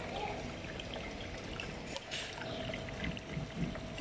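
Steady trickle of water in a goldfish tank, with a faint steady hum underneath.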